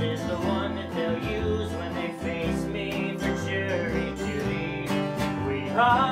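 Acoustic guitar strummed together with a plucked upright bass, whose low notes change about every half second, in a live folk-song performance.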